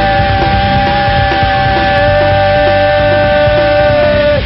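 Punk rock band playing live: electric guitar holding long, steady ringing notes over a regular drum beat of about two hits a second.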